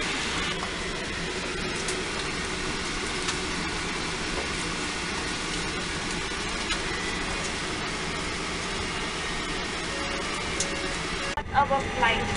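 Steady hiss of a Boeing 737-800's cabin air system at the gate, with a faint murmur of passengers' voices under it. Near the end the hiss breaks off and a few sharp knocks follow.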